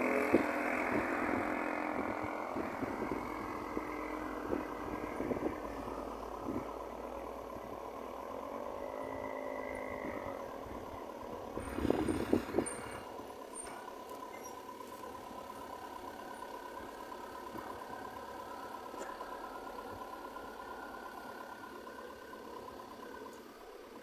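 A car engine running at idle, heard from inside the car, slowly growing quieter. A brief burst of clatter comes about twelve seconds in.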